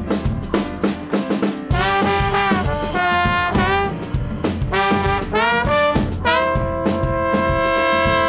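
Two trombones playing a melodic phrase together over a band with piano, electric bass and drum kit. The horns come in about two seconds in and end on a long held chord from about six seconds in.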